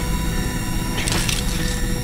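Film sound effect of a sonic weapon: a loud, steady low rumbling drone laced with thin steady high tones, with a short hissing burst about a second in.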